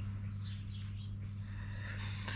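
A steady low hum with a few faint bird chirps over it.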